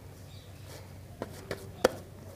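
Three short knocks of dough and hands against a steel plate as oiled rice-flour dough is kneaded on it; the third knock, near the end, is the loudest.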